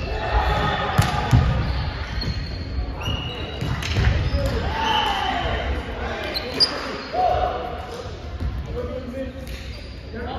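Indoor volleyball rally on a hardwood court: the ball is struck and hits with sharp knocks, the strongest about one second in and again around four seconds, while players' shoes give short squeaks on the floor. The sounds ring out in the hall.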